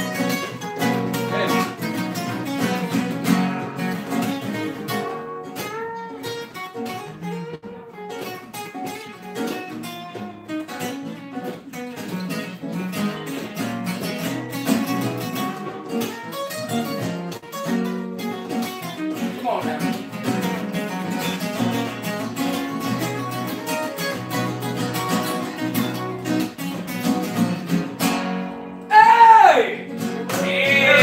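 Acoustic guitars playing an instrumental passage together, quick picked and strummed notes in a flamenco-like style. Near the end the playing breaks off and a loud voice calls out.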